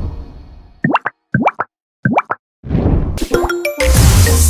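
Cartoon sound effects for an animated subscribe button. A puff fades out, then three quick rising 'bloop' plops follow, about half a second apart. Near the end a whoosh swells up, with a few short tones, into the start of the channel's logo jingle.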